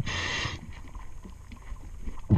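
A diver's breathing regulator hissing briefly for about half a second on an inhaled breath, heard through the water, then a low steady underwater murmur.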